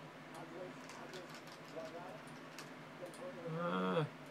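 Faint, low voices with a few soft clicks, then a short, louder voiced sound from a man near the end.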